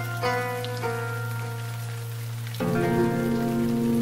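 Background music: a few plucked string notes over a steady low drone, then a fuller held chord comes in louder about two and a half seconds in.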